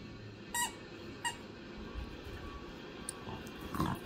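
Two dogs playing over a plush toy on a bed: two short high-pitched squeaks about two-thirds of a second apart, then a louder rustle near the end.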